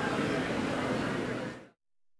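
Steady background noise of the course's crowd and surroundings as picked up by the broadcast microphones, fading out and dropping to silence after about a second and a half.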